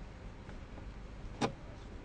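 Low steady room hum with a single short click about one and a half seconds in, as a plastic set square is set down on the drawing sheet.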